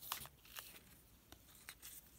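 Trading cards being handled on a wooden tabletop: a few faint, short taps and rustles.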